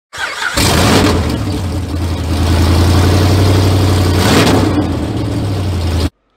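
A car engine catches about half a second in and runs at a steady speed, then cuts off abruptly at the end.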